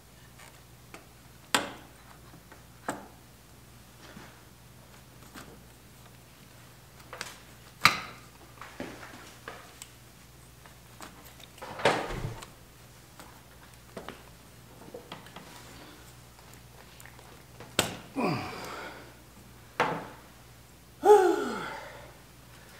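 Scattered clicks and knocks of hand tools and metal parts as the carburetor bank and intake manifold clamps of a Honda CB750 are worked on by hand, with a couple of short squeaks that fall in pitch near the end.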